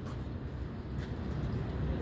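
Steady outdoor city background noise with a low rumble of distant traffic.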